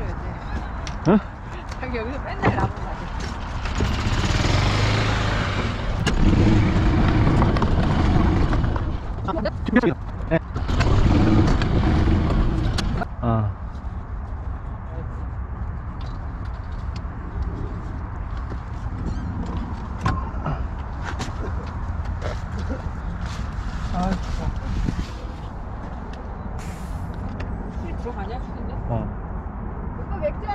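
Golf cart riding along a paved cart path: a steady low rumble with a louder stretch of rushing noise in the first half, and now and then a sharp click or clatter from the clubs in the bag.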